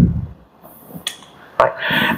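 A short pause in a lecture: the end of a spoken sentence fades into quiet room tone, with one short click about a second in, then the lecturer says "right".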